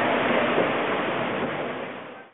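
Steady rushing noise of water and pumps running in a room of large rehabilitation holding tanks, fading out toward the end.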